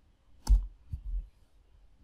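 A single sharp key click on a computer keyboard about half a second in, followed by a few fainter taps around a second in. This is the keystroke that submits the typed address.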